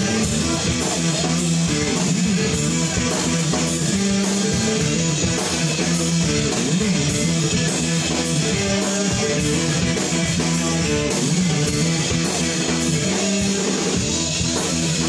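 Live funk band playing an instrumental passage: electric guitar to the fore over bass guitar and drums keeping a steady beat, recorded from across a bar room.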